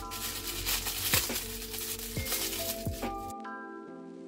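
Background music with notes and a regular beat, over the crinkling of a clear plastic bag as a suction-cup mount is unwrapped from it. The crinkling stops a little past three seconds in.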